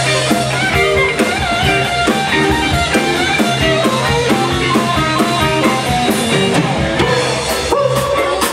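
Live blues band playing: electric guitar lines over a drum kit.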